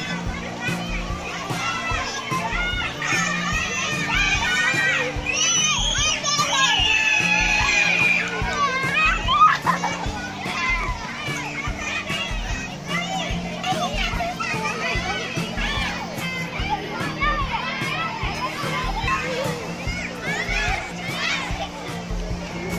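Many children shouting, calling and squealing at once while they play, with high-pitched shrieks clustered about five to eight seconds in.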